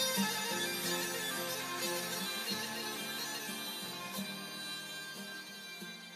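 Music from the song, with no singing: a melody over steady held tones, fading out steadily toward the end of the track.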